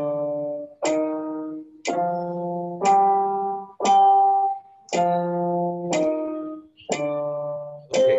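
Electronic keyboard playing a steady sequence of chords, about one a second, each struck sharply and dying away before the next.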